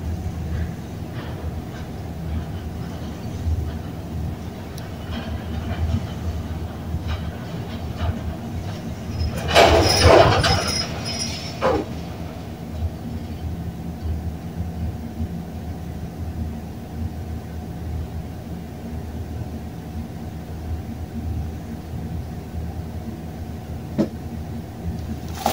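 Elevator running in its shaft as the car travels up and then stops: a steady low rumble and hum, with a louder rushing noise about ten seconds in that lasts about two seconds.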